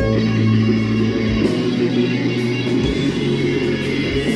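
Live rock band playing an instrumental passage: electric guitars over a held bass note, with a few kick-drum thumps and cymbal crashes.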